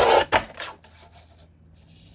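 Tonic Studios guillotine paper trimmer's arm brought down through card: a loud short rasping cut lasting about a quarter second, then a sharp click, fading within the first second.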